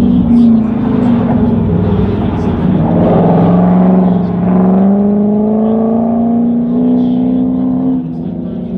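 Car engine running on an autocross course, its pitch climbing slowly and steadily as the car accelerates over the second half.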